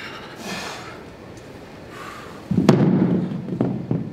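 Several dumbbells being set down on the floor: a cluster of thuds and knocks starting about two and a half seconds in, the sharpest one just after.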